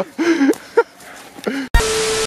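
A few short vocal outbursts from a man, then near the end a loud burst of hissing TV static with a steady beep tone in it: a glitch transition effect that cuts off abruptly into silence.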